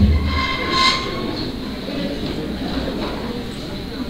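Chairs scraping and creaking as people sit down at a table. There is a low bump at the start and a short squeal just before a second in, over low rumbling room noise.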